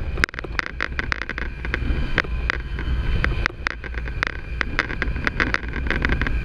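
Outboard motor running at speed on a small open skiff, a steady low rumble with a faint steady whine, broken by many sharp, irregular knocks several times a second.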